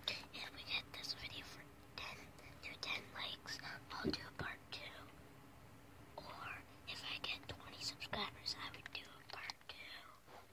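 A person whispering close to the microphone, in short runs of words with a pause a little after halfway.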